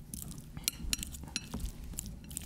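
Metal forks clinking and scraping against a glass mixing bowl as ripe avocado is mashed, a few irregular clinks.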